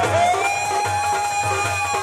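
Live Punjabi folk music: a woman's singing voice slides up into one long held note over a steady drum rhythm.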